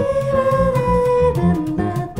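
Live jazz band: a woman singing a wordless line, holding one long note that sags slightly before moving to shorter, lower notes, over electric bass, hand percussion and guitar.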